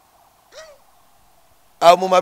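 A short pause in a conversation with only faint steady background noise, broken by a brief vocal sound about half a second in. A man starts talking near the end.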